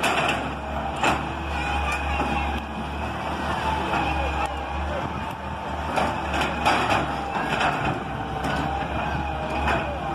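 Hitachi EX200 excavator's diesel engine running with a steady low hum as its bucket breaks down concrete-block house walls, with a series of sharp crashes of falling masonry, several of them in the second half.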